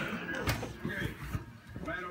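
People's voices in a room, with a short sharp knock about half a second in.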